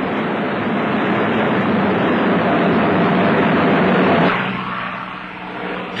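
Piston aircraft engine running in flight, a steady loud drone that swells slightly and then falls away about four seconds in.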